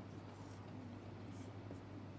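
Faint strokes of a felt-tip marker on a whiteboard, a few short scratchy strokes over a steady low hum.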